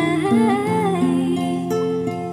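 A woman singing a slow melody, her voice sliding between held notes, over a soft instrumental accompaniment of sustained chords.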